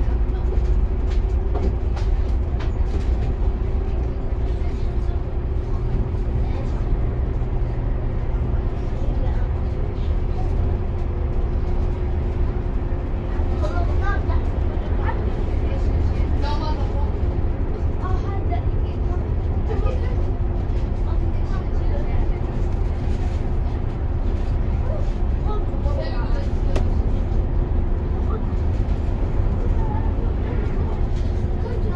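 Moving bus heard from inside the cabin: a steady low engine and road drone with a constant hum over it.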